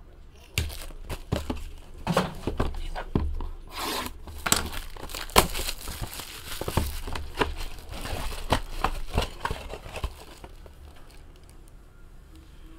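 A clear plastic trading-card bag crinkling and tearing as it is ripped open by hand: a dense run of sharp crackles that dies away about ten seconds in.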